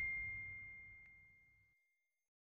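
A bell ding sound effect from a notification-bell animation: one high, clear ring fading away over about a second and a half, with a faint tick about a second in.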